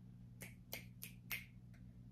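Four faint, sharp clicks about a third of a second apart, then a fainter fifth near the end, over a steady low hum.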